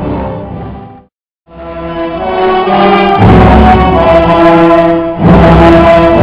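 Orchestral music fades out to a brief silence, then another passage of orchestral music fades back in and plays on at full level, with a short dip near the end.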